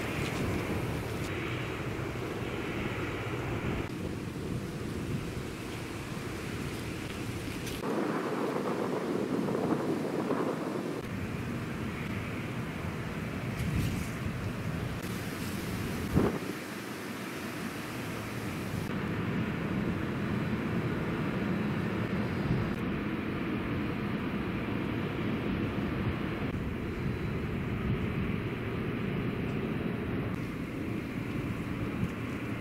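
Outdoor ambience: steady wind noise and distant traffic, its tone changing abruptly several times, with a louder stretch about 8 to 11 seconds in and a sharp click at about 16 seconds.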